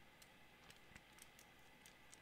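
Near silence: faint room tone with five or six faint, scattered clicks.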